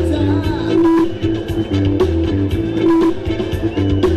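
A live band playing Thai ramwong dance music, with sustained melodic lines over a heavy, recurring bass pulse.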